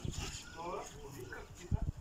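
Dull low thuds of a dairy cow's hooves stepping down a rubber-matted trailer ramp, the loudest cluster near the end, with a brief murmur of a man's voice in between.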